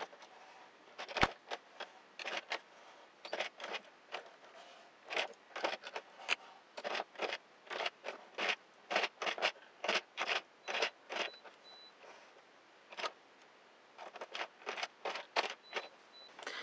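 Casting off a circular knitting machine by hand with a darning needle: a string of short, irregular clicks and scrapes, a few a second, as the needle and yarn catch on the machine's plastic needle hooks and the loops are lifted off. One sharper click comes about a second in, and there is a brief lull near the end.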